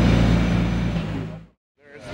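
Nissan Skyline R33's engine idling steadily with a low, even hum, then fading out to silence about a second and a half in.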